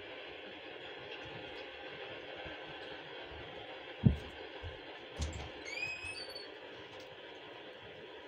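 Steady background hiss with a sharp knock about four seconds in, followed by a few softer thumps and a brief high chirp just before six seconds.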